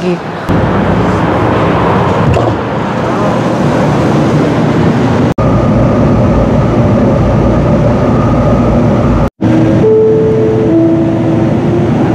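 Light-rail train running, heard from inside the car: loud, steady running noise of wheels and motors, broken twice by brief dropouts. A steady whine joins about five seconds in, and a few held tones of different pitch sound near the end.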